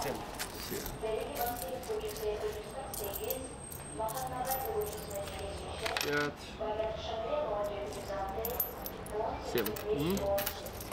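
Small metal coins clinking as they are picked from a palm and set down one by one on a wooden tabletop, with voices talking in the background.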